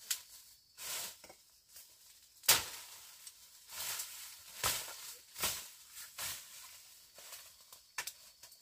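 Machete cutting through forest undergrowth: one sharp chop about two and a half seconds in, the loudest sound, among repeated swishes and rustles of leaves and stems being slashed and pushed aside.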